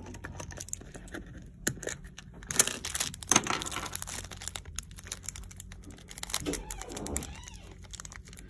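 Small plastic zip-lock bag crinkling and rustling as it is handled and opened to take out AA batteries, with short sharp clicks, busiest from about two and a half seconds in.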